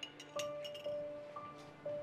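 Soft background music score: a bell-like note struck about twice a second over a faint sustained tone, with a few light clinks.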